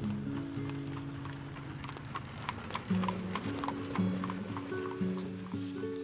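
Horse hooves clip-clopping at a walk, a regular run of about three to four hoof strikes a second, over music of held low notes.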